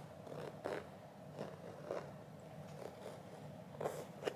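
A fingertip tracing and scratching over the textured monogram coated canvas of a Louis Vuitton Speedy Nano bag, ASMR-style: faint scratchy rubbing with a few brief louder strokes.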